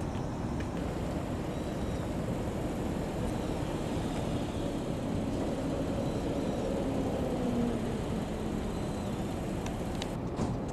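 Toyota Crown police patrol cars driving slowly past one after another, a steady engine and tyre noise that swells a little about three quarters of the way through.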